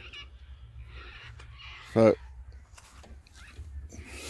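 Quiet outdoor background with a steady low rumble and faint camera-handling ticks as the camera is carried, broken by one short spoken word about halfway through.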